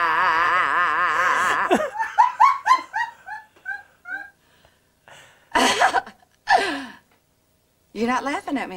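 A woman's long, wavering 'ahhh' roar, a shouted lion-roar exercise, held until about two seconds in and cut off sharply. A run of laughter follows, falling in pitch and fading, then two short breathy bursts.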